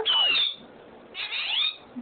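Pet parrot calling twice: a short whistled call at the start that dips and then rises, then a second call of sweeping tones about a second later.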